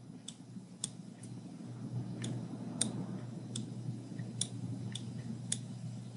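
Computer mouse clicking: about a dozen short, sharp clicks at irregular intervals as moves are played on an on-screen chess board, over a faint steady low hum.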